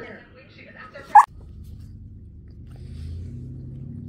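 German shepherd giving one short, sharp yip just over a second in, answering the question of whether he wants more pizza. A low, steady hum follows.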